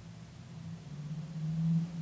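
A low, steady hum that swells to its loudest near the end and then eases off.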